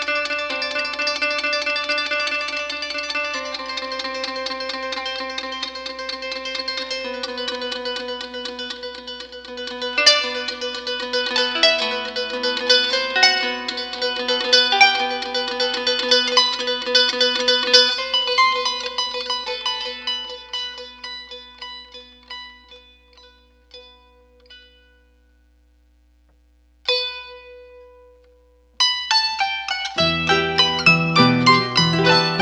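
A duet of two harps playing a pasillo: many plucked notes ringing over held low tones. The playing thins out and dies away about 25 seconds in, a single note sounds, and both harps start again just before the end.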